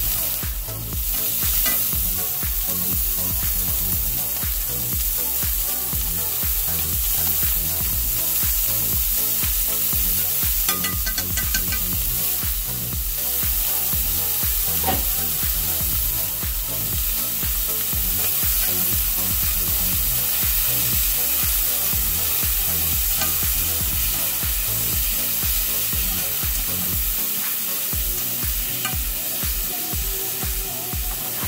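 Shrimp and squid sizzling in oil in a nonstick pan, stirred now and then with a wooden utensil. Background music with a steady low beat plays under the frying.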